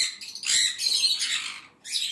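Sun conures screeching: a short harsh call at the start, a longer ragged one from about half a second in, and another near the end.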